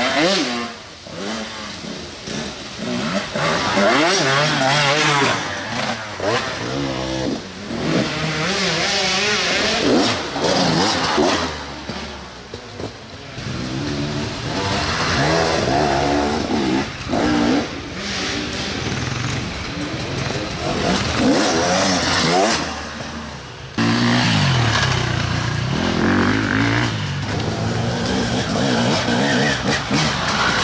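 Enduro dirt-bike engines revving hard and unevenly, the pitch rising and falling again and again as the bikes labour up a steep, loose slope. About three-quarters of the way through, the sound switches abruptly to a louder, steadier engine note.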